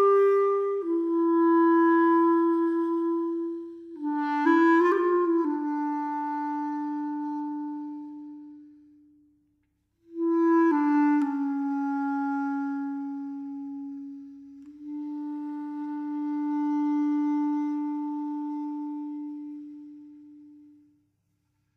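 Solo clarinet playing a slow melody of long held notes, with a brief run of quicker notes about five seconds in. Halfway through the phrase dies away into a short pause, and a second phrase of long held notes follows and fades out near the end.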